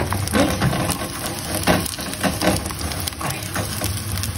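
A wooden spoon stirs chopped green garlic in a frying pan of olive oil, in repeated scraping strokes over the sizzle of gentle frying as the garlic softens. A steady low hum runs underneath.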